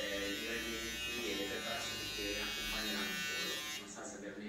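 Electric hair clippers running with a steady buzz during a boy's haircut, stopping near the end.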